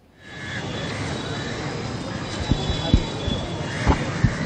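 Outdoor street noise from road traffic: a steady rumble and hiss that fades in at the start, with a few faint knocks.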